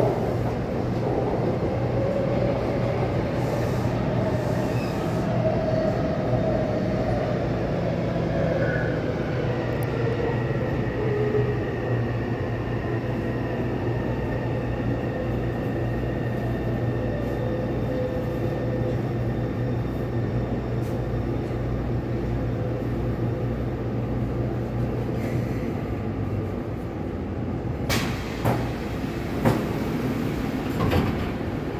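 Taipei Metro C301 train, refitted with new propulsion equipment, heard from inside the car as it slows into a station: its motor whine glides down in pitch over a steady rumble, and the running noise dies away as the train stops. Near the end come a few sharp clicks as the doors open.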